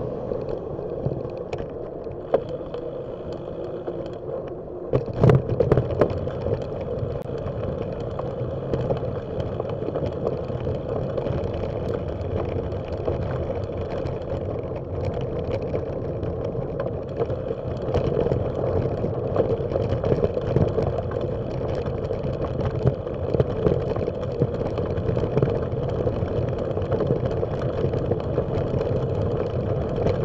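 Steady rumble of a bicycle on the move, heard from a bike-mounted camera, with a few sharp jolts about five seconds in. Later the tyres run on a gravel path.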